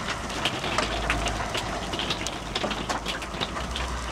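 Hail falling: many quick, sharp taps scattered over a steady hiss, with a low rumble underneath.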